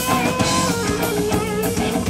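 Live blues-rock band playing an instrumental passage: an electric guitar lead with held, bent notes that waver near the end, over bass guitar and drum kit.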